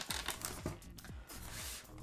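Quiet packaging handling noise: scattered light clicks and faint rustling as the opened styrofoam shipping box and the plastic-wrapped parts inside it are handled.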